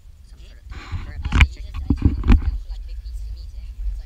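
Rustling, then three sharp knocks with thumps in quick succession, about a second apart, from a pole and its line of raw meat being pulled out of a plastic bucket and swung up.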